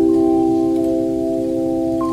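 Handchimes of a handbell choir ringing a sustained chord of a slow hymn, with a higher note struck just after the start and another about halfway through.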